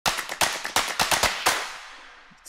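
A rapid, irregular run of sharp cracks, about eight a second, that stops after about a second and a half and dies away in a reverberant tail.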